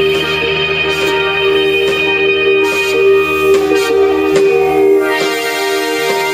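Live rock band playing, with electric guitars and keyboard holding long sustained notes; the low bass end drops away about five seconds in.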